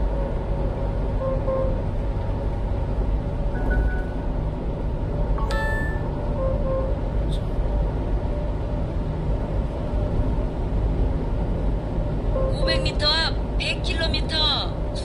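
Steady low rumble of a 1-ton box truck's engine and tyres heard inside the cab at about 60 km/h. A short electronic chime sounds about five and a half seconds in, and a voice starts near the end.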